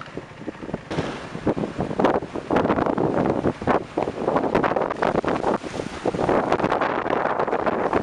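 Strong storm wind buffeting the microphone in irregular, gusty surges. It is quieter for about the first second, then loud for the rest.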